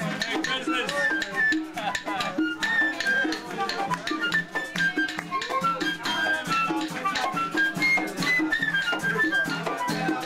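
Live Puerto Rican parranda music: a flute plays a stepping melody over hand drums and shakers, with voices mixed in.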